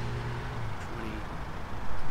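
Low, steady engine hum of a motor vehicle that ends under a second in, over a low outdoor rumble.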